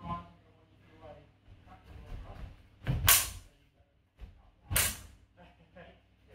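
Two loud hits about a second and a half apart as a spadroon and a dussack meet in a sparring exchange, with a brief voice at the start.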